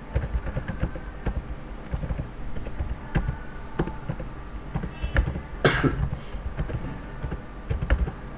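Computer keyboard typing: an uneven run of key clicks, with one louder click a little past halfway.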